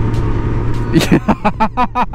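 Motorcycle engine running steadily at cruising speed, with road and wind noise. About a second in, a voice starts over it.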